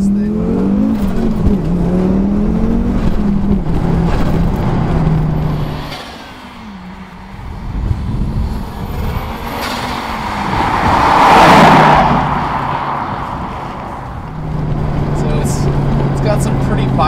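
Turbocharged 2.2-litre five-cylinder engine of a modified Audi urS4, with a GT3071R turbo and full 3-inch exhaust, heard from inside the cabin pulling hard, its pitch rising and dropping through the revs. After a quieter stretch the car is heard from the roadside going past, loudest at about eleven to twelve seconds in. The engine is heard from the cabin again, steadier, near the end.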